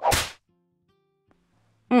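A single short swish of noise, about a third of a second long, right at the start, followed by a faint steady hum.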